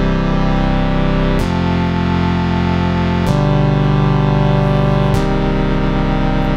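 Sustained synth chords from the reFX Nexus software instrument playing a four-chord progression, C major, F major, G major and C minor, each held about two seconds with a sharp change to the next. The chords are voiced low and heavy in the bass, which sounds a bit low: the voice range is set too low.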